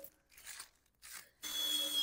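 Faint rustling of plastic sheeting, then about one and a half seconds in a cordless drill starts running, its motor whining steadily as it bores into plastic landscape edging.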